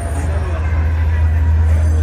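A steady, loud low droning rumble with people talking in the background.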